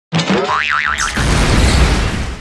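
Cartoon sound effects: a springy, wobbling boing in the first second, then a noisy poof with a deep rumble as a cartoon character vanishes in a puff of smoke. The poof is loud and fades out slowly.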